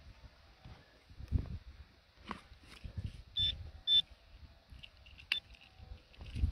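Handheld metal-detecting pinpointer giving short, high beeps as it is probed into a freshly dug hole, two close together a little past three seconds in and one more near five seconds, a sign of a metal target in the hole. Soft thumps and rustling of soil being handled in between.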